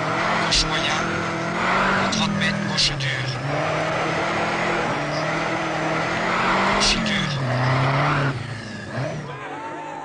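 Renault 5 Turbo rally car's turbocharged engine being driven hard, its revs climbing and dropping through the gears, with several sharp cracks over the engine. It turns quieter for the last second or so.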